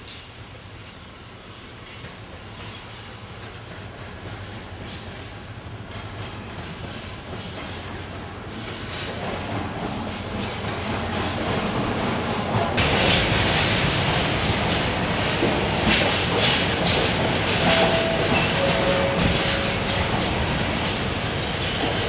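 Freightliner diesel locomotive hauling a long train of hopper wagons past, growing steadily louder as it approaches, then the wagons' wheels clattering over the rail joints. Brief squeals from the wheels come in twice, a high one and then a lower one, over the clatter.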